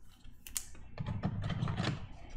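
Glossy chrome trading cards being handled: a sharp click about half a second in, then a quick run of light clicks and rubbing as the card is shifted in the hand.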